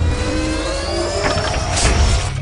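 Logo-intro sound effects: a sweep of slowly rising tones over a rushing whoosh, swelling into a louder whoosh near the end as the logo settles.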